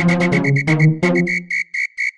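Gqom dance music at a breakdown: a high whistle-like tone repeats in quick pulses, about six a second, over lower sustained chord notes that fade away near the end, with no kick drum or bass.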